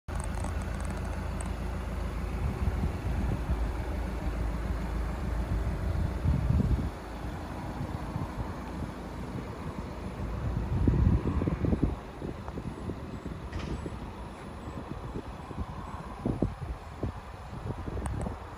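Wind buffeting the microphone outdoors, a low rumble that surges in gusts.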